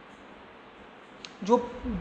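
A steady faint hiss of room tone, a soft click, then about one and a half seconds in a man's voice starts on a single drawn-out word.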